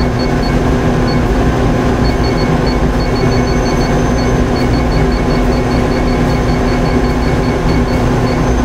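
Short high beeps from the INFICON XTC/2 deposition controller's keypad, dozens of them at uneven spacing and up to about four a second, as a key is pressed again and again to scroll down the program list. Under them runs a loud, steady machine hum with a low drone.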